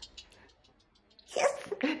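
Near silence for about a second, then a sudden loud, breathy burst from a person's voice that runs straight into speech at the end.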